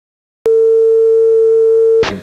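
Television line-up test tone sounding with colour bars: one loud, steady pure tone at a single pitch. It starts suddenly about half a second in, after silence, and is cut off abruptly.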